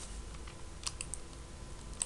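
A few faint, quick clicks of a computer mouse and keyboard, about four close together about a second in, over a low steady background hum.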